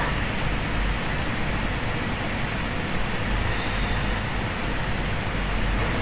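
Steady hiss of recording background noise, even from low to high, with a low hum underneath and no distinct events.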